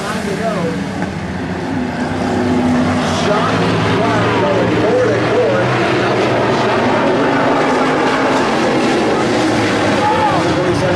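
A pack of street stock race cars running steadily around a short oval track, their engines making a continuous loud noise that swells a little about three seconds in, with spectators' voices close by.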